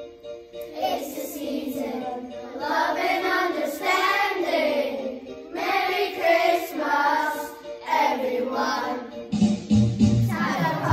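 A class of young children singing a Christmas song together, in phrases with short breaks between them.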